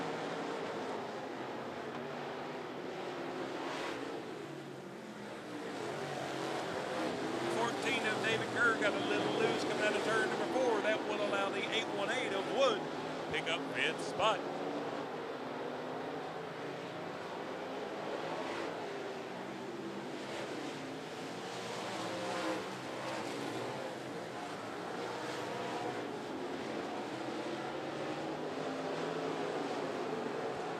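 Engines of several dirt-track race cars running at racing speed around the oval, heard as a steady drone. A louder stretch about 8 to 14 seconds in carries rising and falling engine pitch as the cars pass close.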